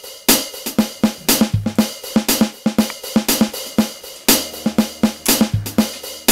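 Programmed drum-machine beat from the NUX Mighty Air's drum section: a funk pattern of kick, snare and hi-hat at 119 BPM, with hits coming about four to the second. A low steady hum joins about four seconds in.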